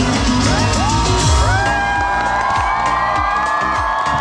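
Live outdoor concert music with a steady beat, heard from within the crowd; several voices slide up into one long held note about a second and a half in, with cheering from the audience.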